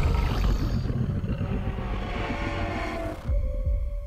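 A deep, throbbing low rumble from a film trailer's sound design, with a hazy wash above it. It drops away abruptly a little over three seconds in.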